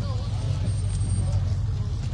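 Steady low rumble of idling bus engines, with indistinct chatter from a crowd of voices over it.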